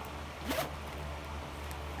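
Zipper of a velvet bag pulled open in one quick stroke about half a second in.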